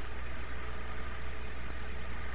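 Steady low hum with an even hiss and a faint thin tone: the background noise of the recording during a pause in speech.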